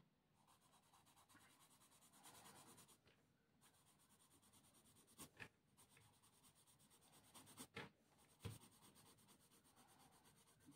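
Faint scratching of a soft 8B graphite pencil hatching shading strokes on drawing paper, coming in short intermittent runs.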